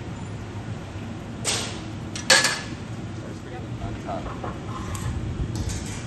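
Two sharp metal knocks, about a second and a half and two seconds in, the second the louder with a short ring, as the steel blowpipe and hand tools are handled on the glassblowing bench, over a steady low rumble.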